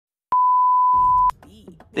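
Electronic test-tone beep: one steady pitch held for about a second, starting about a third of a second in and cutting off sharply, used as a glitch-style transition sound effect.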